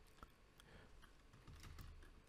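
Faint computer keyboard typing: a few soft keystrokes, most of them bunched together in the second half.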